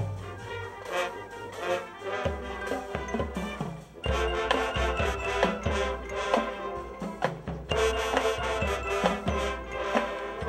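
Marching band music: brass instruments playing a tune over a drum beat, growing louder and fuller about four seconds in.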